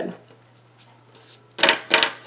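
A stack of laminated paper dividers being squared up against a cutting mat: a short rattle of stiff sheets knocking together near the end, in two quick parts.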